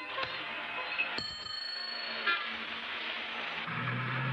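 City street traffic noise with a high ringing tone, like a bicycle bell, about a second in, and a brief horn toot just after two seconds. Near the end a low steady bus-engine hum sets in.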